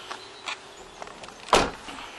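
A Vauxhall Vivaro van's door being shut: a single loud thump about one and a half seconds in, after a few light clicks.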